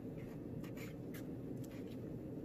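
Faint, scattered light clicks and scrapes of handling as an Oreo pop on a wooden stick is lifted off an aluminium foil tray, over a low steady room hum.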